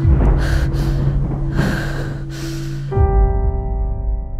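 Heavy, gasping breaths, four or five in a row, over a low sustained music drone. About three seconds in the breathing cuts off and a new sustained keyboard chord begins abruptly.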